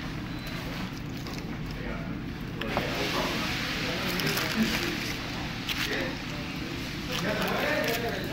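Restaurant room tone: a steady low hum with faint, indistinct voices in the background. A denser rustling hiss comes in about three seconds in, with a few small clicks.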